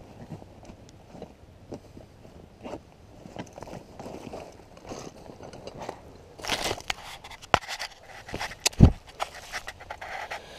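Close rustling and scraping of a backpack and gear over dry leaf litter. About six and a half seconds in there is a louder burst of rustling, then a few sharp knocks and one heavy thump near the end as the ground-level camera is picked up and handled.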